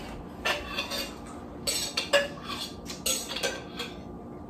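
A table knife scraping and clinking against the inside of a jelly jar, several short strokes as jelly is scooped out to spread on a cake.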